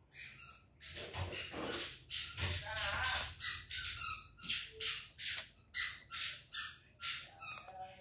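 A bird giving a rapid series of short, sharp chirping calls, about two to three a second, starting about a second in and running on with no low cooing.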